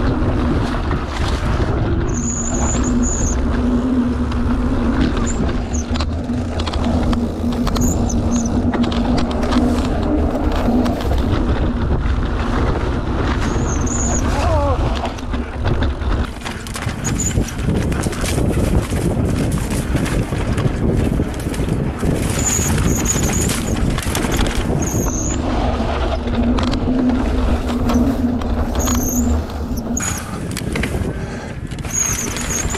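Mountain bike riding fast down a dirt singletrack: a continuous rumble of tyres over dirt and rocks with wind buffeting the microphone. Short, high disc-brake squeals come several times as the rider brakes into the banks.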